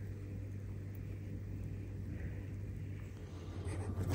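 A steady low hum with faint background noise and no distinct events.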